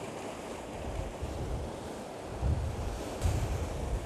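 Sea surf washing against a rocky shore, a steady hiss, with wind buffeting the microphone in low rumbling gusts that grow heavier in the second half.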